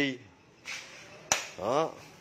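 A single sharp click about a second and a half in, followed straight away by a brief vocal sound from a man.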